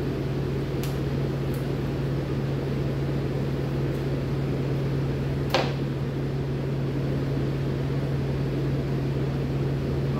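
Steady low mechanical hum of running room equipment such as a fan or cooling unit. There are a couple of faint clicks early on, and one sharp clack about halfway through as a knife is set down on the plastic cutting table.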